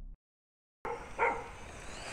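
The tail of the outro music cuts off, followed by a moment of silence. Then outdoor sound starts, with one short, loud cry a little over a second in.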